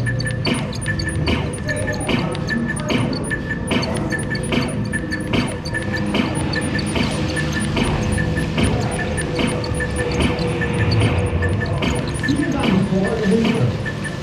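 Dark ride's background soundtrack music with a steady pulse about twice a second and a held tone, with a recorded German voice announcement coming in near the end.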